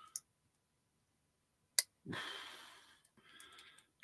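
A single sharp click a little under two seconds in, from a vintage pocket knife worked with a nail-nick tool at a stiff secondary blade that will not open, followed by a long breath out and a fainter one near the end.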